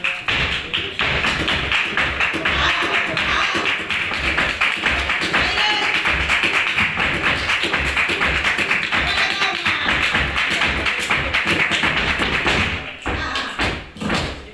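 Flamenco footwork and palmas: a dancer's shoes beat rapid heel-and-toe strikes on the stage floor while the seated performers clap the rhythm, over flamenco guitar. The dense beating eases off near the end.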